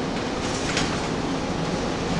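Interior of a Gillig Phantom transit bus under way: steady engine and road rumble with the HVAC and cooling fans running, and a short rattle of the body and fittings just under a second in.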